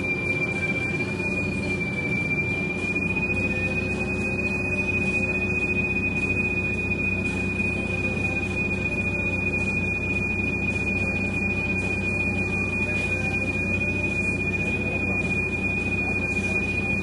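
Cabin noise inside a Bustech CDi double-decker bus: a low, steady mechanical hum with a constant, thin, high-pitched whine over it.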